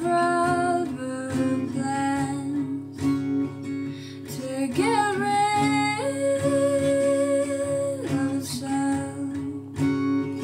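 Steel-string acoustic guitar strummed and picked in a slow, gentle chord pattern, with a woman's soft singing voice over it; about halfway through she holds one long sung note.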